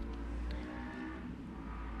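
Low steady rumble with faint background noise and no speech: the background hum of the recording.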